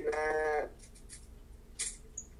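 A voice holding one long sung note, heard through a laptop's speakers on a video call, which stops about two-thirds of a second in. A short breathy noise follows near the end.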